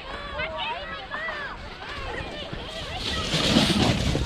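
Children's high-pitched calls and shouts from the slope, then a sled sliding fast over the snow close by, a rushing scrape that grows and is loudest near the end.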